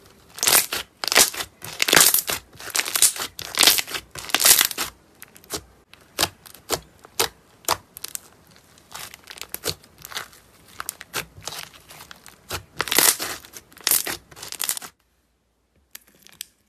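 Hands squishing and folding white slime mixed with small foam beads, giving crackly, crinkly popping in bursts roughly one to two a second, loudest in the first few seconds and again near the end. It stops about a second before the end.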